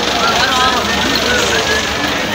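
Busy market ambience: many overlapping background voices over a steady low rumble.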